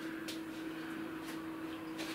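Steady hum from a running appliance or fan, with a couple of faint soft clicks over it.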